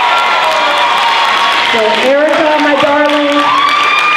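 Audience applauding and cheering, with shouts from the crowd over the clapping.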